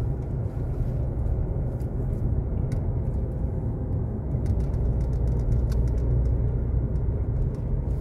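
Inside a moving car's cabin: the steady low rumble of tyres and engine while driving along a road through a tunnel.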